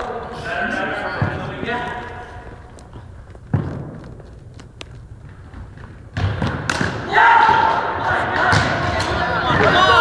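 Players' voices echoing in a gymnasium during an indoor cricket game, with a single thud about three and a half seconds in, then loud shouting from about six seconds in as play breaks out.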